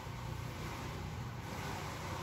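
Steady low background rumble and hiss of outdoor ambience, with no distinct events.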